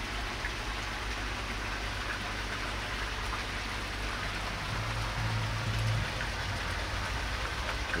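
Steady hiss of running, splashing water, with a low hum that swells briefly about five seconds in.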